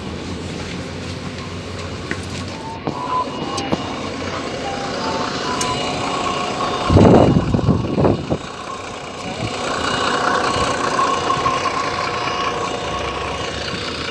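Mercedes-Benz Citaro city bus running at the stop, with a few short beeps in the first half and a loud burst of noise about seven seconds in, then its engine rising as the bus pulls away.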